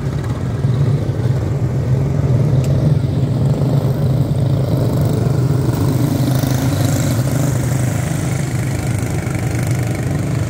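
A pack of quarter midget race cars with small single-cylinder Briggs & Stratton Animal engines running together on a dirt oval, giving a steady, multi-engine drone. The sound swells as the field passes close and then carries on toward the far turn.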